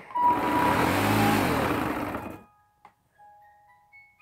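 A loud rushing noise lasting about two seconds, which then cuts off. It is followed by a few faint, spaced chiming melody notes from music whose source can't be found.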